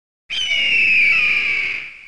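Bird-of-prey scream sound effect, the classic eagle cry: one long, harsh cry that starts sharply, slides slightly down in pitch and fades out near the end.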